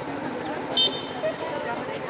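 Spectators chattering around a football pitch, with one short, high-pitched whistle blast a little under a second in.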